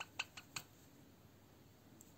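Four short, sharp clicks within the first half second from hand needle-lace work: a steel sewing needle and thread being worked through the knotted loops of the lace edging.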